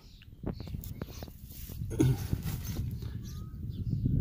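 Handling and rustling noise as a handheld camera is moved down beneath a farm wagon, with scattered small clicks and a brief low voice-like sound about two seconds in.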